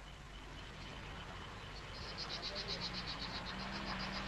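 Faint outdoor ambience. About halfway in, a small animal starts a rapid high pulsing call, about eight pulses a second.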